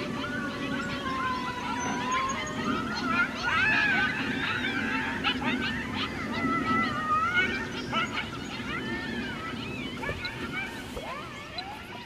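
Eastern coyote pack howling and yipping together: several wavering calls overlap, long sliding howls mixed with short rising and falling yips, thinning out near the end.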